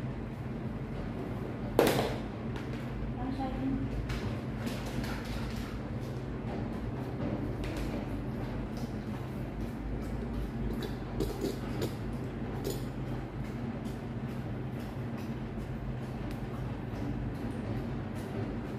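A steady low mechanical hum runs throughout, with scattered light clicks and taps and one sharp knock about two seconds in.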